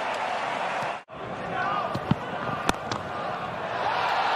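Crowd noise of a cricket ground heard through a TV broadcast, cut off abruptly for a moment about a second in by an edit, then returning. After the cut, two sharp knocks stand out over the crowd about half a second apart.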